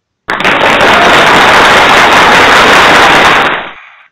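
A loud burst of dense crackling noise, an intro sound effect for the title card. It starts suddenly a fraction of a second in, holds steady, and fades out near the end.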